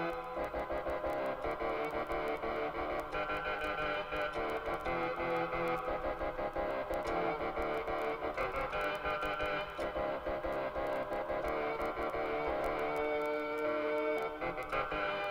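Casio CTK-3000 keyboard playing held chords that change every second or two, over a fast, even ticking rhythm.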